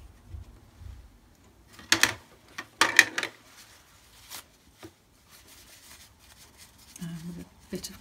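Kitchen roll being torn and crumpled: two short rasping paper rips about a second apart, the second longer.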